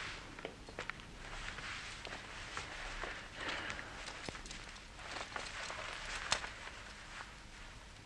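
Faint rustling of clothes as a man gets dressed, with scattered light clicks and a few footsteps.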